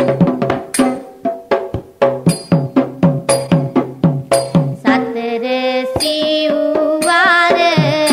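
Kandyan bera drums play a brisk pattern of strokes, about three to four a second, for the first five seconds. Then a held, wavering melody line comes in over sparser drum strokes.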